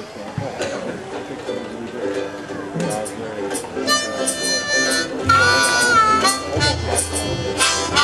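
A small acoustic string band of guitar, banjo and ukuleles starts a tune. About four seconds in a high wind-instrument melody enters with a bent, held note, and a bass line joins soon after.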